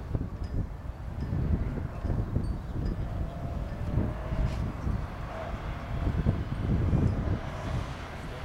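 Wind buffeting the microphone in uneven gusts, the loudest thing throughout. Under it, a first-generation Subaru Forester's flat-four engine runs faintly as the car drives the skidpan, its tone coming through most clearly in the middle.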